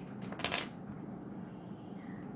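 A small hard object set down with a short clink about half a second in, after a fainter tap.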